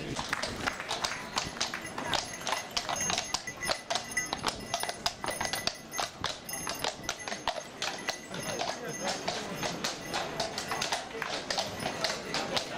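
Hooves of draught horses clip-clopping on stone paving at a walk, a dense, irregular patter of strikes, over the talk of a crowd.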